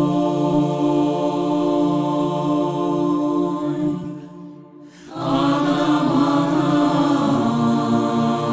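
A cappella vocal ensemble singing long held multi-voice chords. The chord fades out about four seconds in, and a new, fuller chord enters about five seconds in.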